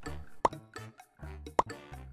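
Background music of short repeated bass notes, with a sharp plop twice, about a second apart.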